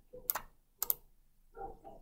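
Two sharp computer mouse clicks about half a second apart.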